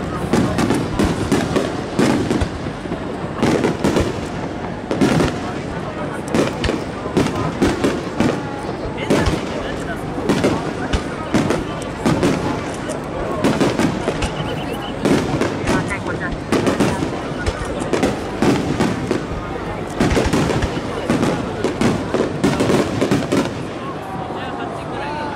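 Aerial firework shells bursting in rapid succession, a continuous barrage of sharp bangs several a second, with people's voices underneath.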